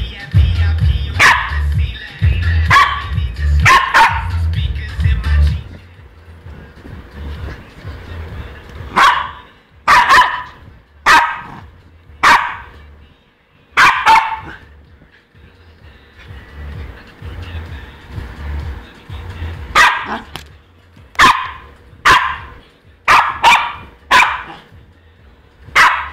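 A young Pomeranian barking excitedly in play: bursts of sharp, high barks come in quick clusters separated by short lulls. Music plays faintly underneath.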